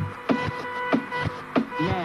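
Live pop concert music in a dance break: a quick, steady beat of sharp hits, about three a second, over a held electronic note.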